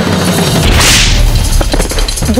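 A sound-effect whoosh, a short sweep of hiss about a second in, over a deep rumble, the kind of swish a TV drama lays over a cut to a fight.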